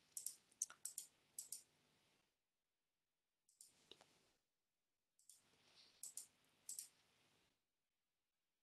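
Faint computer mouse-button clicks in three short bursts: several in the first second and a half, a couple around four seconds in, and a cluster between five and seven seconds.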